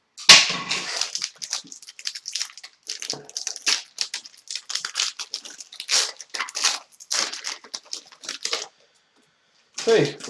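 The wrapper of a hockey card pack being torn open and crinkled by hand: a sharp tear right at the start, then irregular crackling and rustling that stops shortly before the end.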